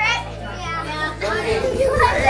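Young children's voices and chatter, with a high-pitched child's call right at the start.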